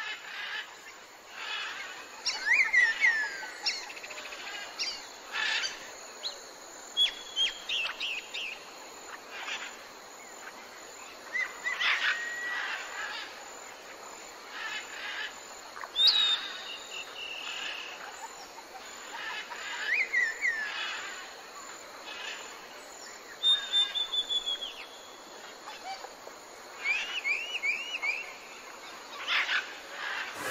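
Mixed birdsong: many short chirps, whistled notes and quick falling glides, some in rapid runs of several notes, every second or two over a faint steady background hiss.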